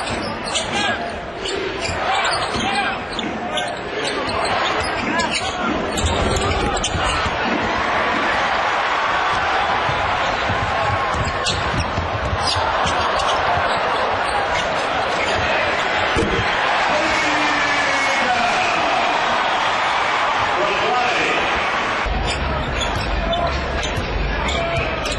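Game sound from an arena: a basketball dribbled on the hardwood court, with sharp bounces clearest over the first few seconds, under a steady crowd noise that grows louder after about six seconds.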